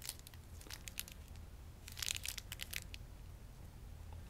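Silver wrapper of a 3 Musketeers candy bar crinkling as it is handled. There are a few crackles near the start and a denser burst of crinkling about two seconds in.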